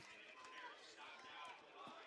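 Near silence: faint background noise of the broadcast feed between commentary lines.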